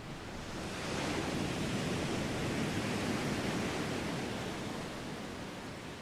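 Ocean surf: a steady wash of breaking waves that swells over the first second and then holds.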